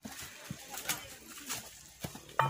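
Faint footsteps and rustling on a dry, leaf-littered forest trail, with a few soft knocks scattered through.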